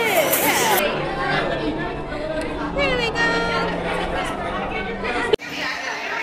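Voices of people chattering, with music playing underneath. The sound breaks off abruptly a little past five seconds, then voices resume.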